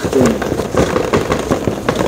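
Cardboard toy box being handled, crackling and clicking in a quick run of small sounds.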